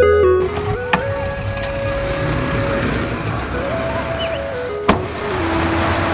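Street traffic noise from passing cars and pickups under soft background music with slow held notes, and a sharp click about a second in and another near five seconds.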